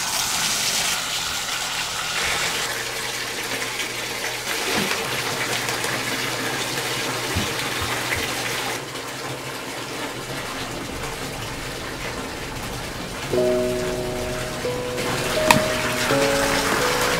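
Bathtub faucet running, a steady stream of water gushing into the tub as it fills. Background music comes in near the end.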